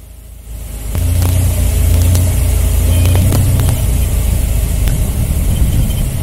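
Floatplane's piston engine and propeller running steadily, with heavy wind rumble on the outside-mounted microphone. It gets louder about a second in.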